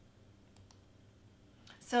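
Two faint computer mouse clicks about a third of a second apart, in an otherwise quiet room.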